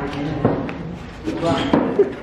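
Indistinct voices talking, with a couple of sharp knocks in between.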